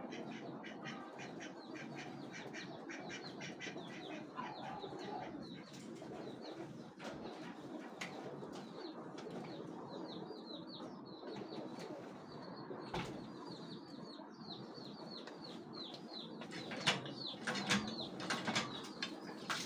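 Small birds chirping in rapid runs of short, high, falling notes, with a few sharp knocks near the end.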